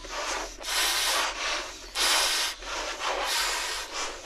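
Children blowing up rubber balloons by mouth: repeated rushing breaths blown into the balloons, about one a second.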